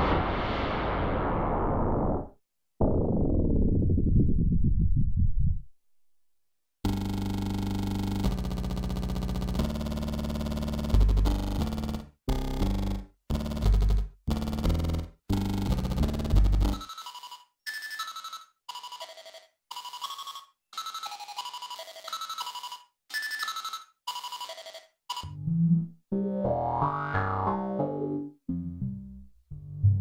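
Aphid DX, a four-operator FM software synthesizer, playing preset demo sounds. Near the start a noisy, swarm-like wash fades away twice. After a short silence come low held notes broken by gaps, then a run of short, higher-pitched notes in quick succession.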